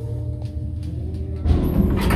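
Passenger lift cabin rumbling with a steady low hum as it travels up the shaft. About one and a half seconds in, the sound gets suddenly louder as the lift nears its floor.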